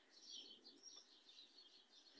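Small birds chirping faintly: a quick run of short, high chirps, with one light click just under a second in.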